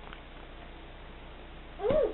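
A short voice-like call near the end, rising then falling in pitch, over faint room noise.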